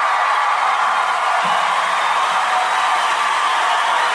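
Loud, steady rushing noise with no clear pitch, cutting off suddenly near the end.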